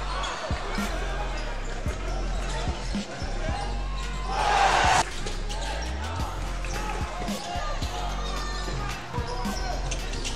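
A basketball bouncing repeatedly on a hardwood court as players dribble, in a large hall. A short loud burst of noise comes about four and a half seconds in and cuts off sharply.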